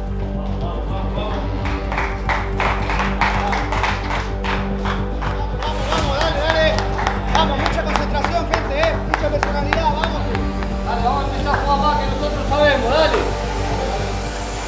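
Players clapping their hands in a steady rhythm over a background music bed, with several voices calling out as the clapping goes on.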